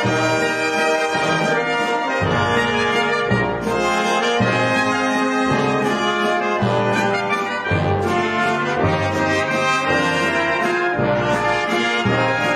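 Brass band music playing steadily, with a low bass note sounding about once a second under the higher brass lines.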